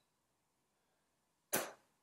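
Near silence, then about one and a half seconds in a single short, breathy spoken word, 'it', with no voiced pitch.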